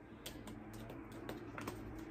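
Tarot cards being drawn from the deck and laid onto a wooden tabletop: several light, scattered clicks and taps of card against card and wood.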